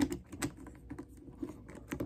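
Plastic action figures being handled and knocked together, giving a scatter of light clicks and taps, with a sharper click right at the start.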